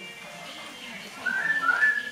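A person whistling a few short high notes that step up in pitch, starting a little past one second in.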